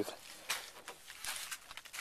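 Faint rustling with scattered light clicks and scuffs, the sounds of someone moving about and handling things.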